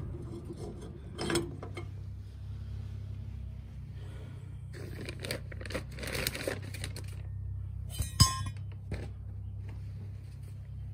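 Small metal parts and tools clinking and scraping as they are handled, with one sharp metallic clank about eight seconds in, over a steady low hum.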